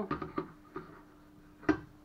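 Small metal gearbox parts being handled: a few light clicks, then one sharp metallic click near the end as a gear is set into the outboard motor's lower-unit gear housing.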